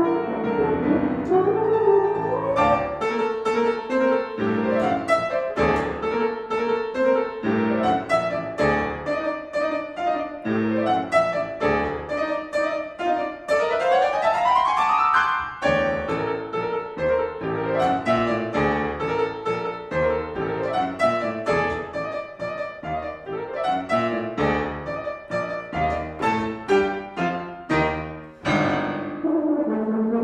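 Grand piano playing a busy classical passage, with many quick notes and a rapid upward run about halfway through, while a euphonium joins more quietly.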